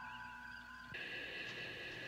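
Faint held tones of television background music and ambience. About a second in they give way at once to a brighter, higher set of sustained tones.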